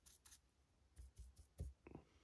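Faint scratching of a splayed paintbrush scrubbing paint onto a 3D-printed model, in several short strokes, with a few soft knocks from the piece being handled in the second half.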